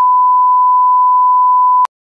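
A censor bleep: one steady, high-pitched pure tone held for nearly two seconds that cuts off suddenly.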